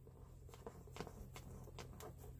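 Near silence: a steady low hum with a few faint light taps.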